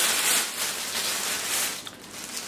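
Gift-wrap paper crinkling and rustling in the hands as a present is unwrapped, a continuous crackly rustle.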